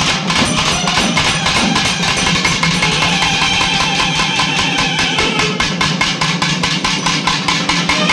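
Live temple festival music: drums played in a fast, steady rhythm, with a nadaswaram holding a melody over them.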